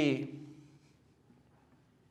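A man's spoken word trailing off, then near quiet room tone with only faint scattered sounds.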